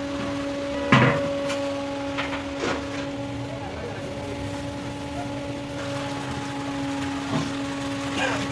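Metal pots and buckets knocking and clanking, the loudest knock about a second in, over a steady hum.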